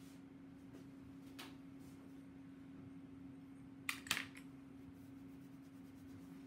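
Quiet worktable sounds: a steady low hum under a faint click, then two sharp, light clicks close together about four seconds in, from small hard objects being handled or set down.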